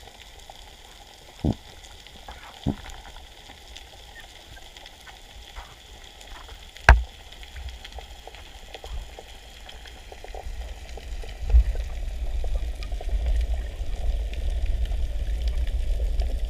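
Underwater sound picked up by a camera mounted on a speargun: a steady crackle of reef noise, broken by a few sharp knocks, the loudest about seven seconds in. From about eleven seconds a low rushing rumble of water builds as the gun moves through the water.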